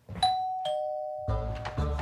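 Two-tone doorbell chime: a higher note, then a lower one about half a second later, each ringing on as it fades. Background music comes in a little past halfway.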